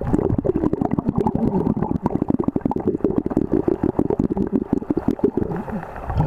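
Water heard from a camera held under the surface: a dense, irregular bubbling and crackling over a low churn, muffled, with almost no treble.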